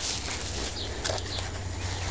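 Birds chirping in short high calls several times over a low steady hum.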